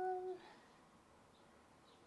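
A short, steady hum from a woman's voice at one pitch, stopping about half a second in, then near silence: room tone.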